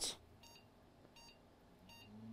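Three faint, short electronic beeps about 0.7 seconds apart from the test motherboard's POST beeper: the beep code that signals the graphics card is not being detected.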